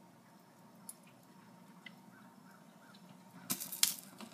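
Faint room tone with a few small ticks, then a quick cluster of sharp clicks near the end as a burning fragment of a plastic swipe card drops into a stainless steel sink from metal tongs.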